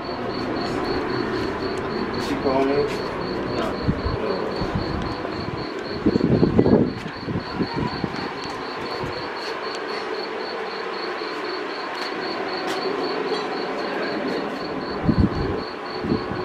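An insect chirping steadily in high, evenly spaced pulses over a low background rumble. A louder cluster of knocks comes about six seconds in and again near the end.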